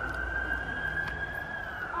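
A siren wailing: one long smooth tone that holds high and starts to fall back near the end, loud enough to startle a rider.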